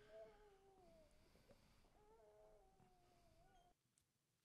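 Near silence, with faint drawn-out tones: two notes moving together with slow glides, heard twice and stopping shortly before the end.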